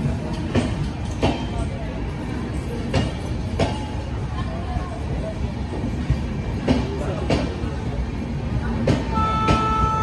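LHB passenger coaches rolling slowly past, with a steady rumble and the wheels clicking over rail joints, mostly in pairs. A steady train horn starts near the end.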